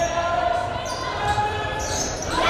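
A basketball being dribbled on a hardwood gym floor, with a voice and held musical notes over it.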